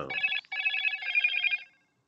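Electronic phone ringtone or alert tone: a short burst, a brief break, then a longer ringing stretch that stops after about a second and a half.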